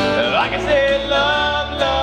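Live singing through a microphone with an acoustic guitar accompanying; the voice slides upward near the start, then holds steady notes.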